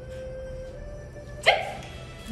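A dachshund gives one sharp bark about one and a half seconds in, over steady background music.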